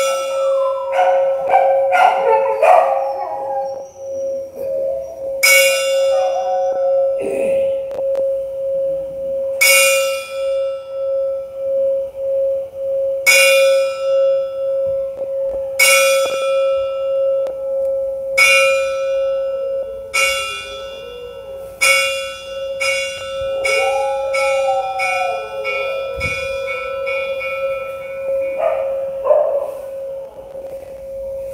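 Large bronze Thai temple bell struck by hand with a striker, a strike every three to four seconds, each ringing out over the bell's steady hum. A dog howls along with the bell near the start and again about 24 seconds in.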